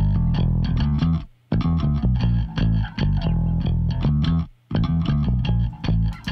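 Music playback of an electric bass line, uncompressed with its parallel compressor bypassed, breaking off briefly twice, about a second and a half in and again near the end.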